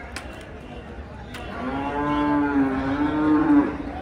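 A cow mooing: one long, steady call of about two seconds, starting about a second and a half in.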